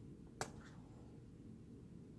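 A single sharp click of a Canadian nickel knocking against other coins as it is picked up from the table, about half a second in, over a faint low hum.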